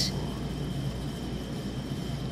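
A steady low hum of background room noise, with no distinct sound event.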